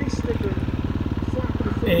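2016 KTM 350 XCF dirt bike's single-cylinder four-stroke engine running steadily with an even beat while riding slowly along a trail.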